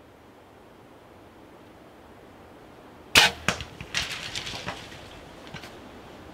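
A Bowtech compound bow shot at a whitetail buck about three seconds in: one sharp crack of the release and arrow hitting the deer, then a quick run of cracks and thumps, fading, as the deer crashes off through dry brush. The speaker says he could not have hit it any better.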